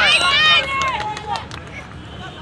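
Several high-pitched voices shouting over each other during a kho kho game, loudest in the first half-second, then trailing off into scattered shorter shouts.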